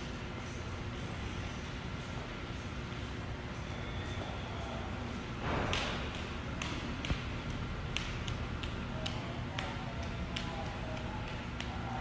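A small child's footsteps tapping on a hard polished stone floor, a run of sharp separate taps through the second half, over a steady low room hum; a brief rustle comes a little before halfway.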